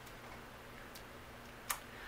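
Quiet room tone broken by two brief clicks, a faint one about a second in and a sharper one near the end.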